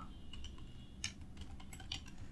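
A few faint keystrokes on a computer keyboard as a short line of code is typed.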